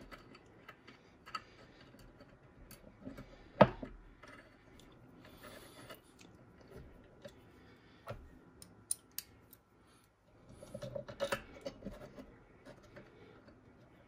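Scattered small metallic clicks and taps of an Allen key and cap head screws being fitted to a power feed bracket, with one sharp click about three and a half seconds in and a flurry of clicks near the end.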